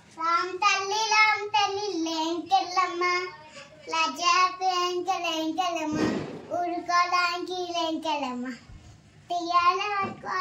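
A young child singing in a high voice, holding steady notes in short phrases with brief pauses. A short burst of noise comes about six seconds in.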